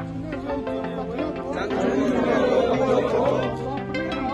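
Background instrumental music with sustained notes, under many men's voices speaking at once as a group recites a pledge together.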